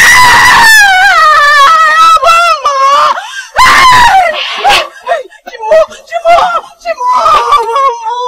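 A woman screaming and wailing in distress. It opens with one long, wavering cry that falls in pitch over about three seconds, a second loud cry comes about three and a half seconds in, and shorter broken cries follow.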